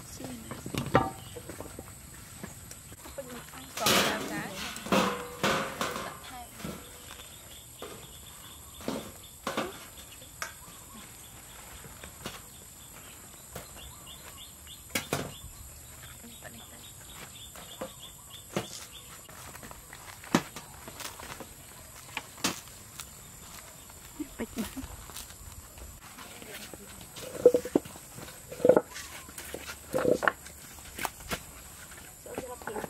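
Scattered knocks and clatter of hands-on food preparation: a knife on a wooden chopping block and baguettes handled on a metal grill rack. Short bursts of voices come about four seconds in and again near the end, and a faint high insect trill pulses through the middle.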